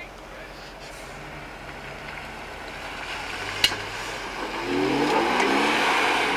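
Jeep Wrangler engine revving in second gear as it drives up a steep muddy obstacle, rising in pitch and getting louder over the second half. There is a single sharp click about three and a half seconds in.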